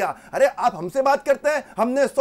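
Speech only: a man talking in Hindi.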